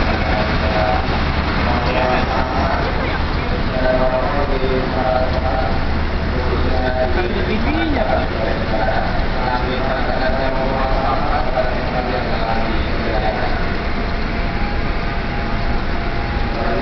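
Passenger coaches rolling along the rails behind a CC 201 (GE U18C) diesel-electric locomotive as the train pulls away. There is a steady rumble, and a low engine hum that is strongest for the first six seconds or so.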